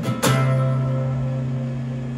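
Acoustic guitar: a final strummed chord, struck just after the start and left ringing as it slowly fades out.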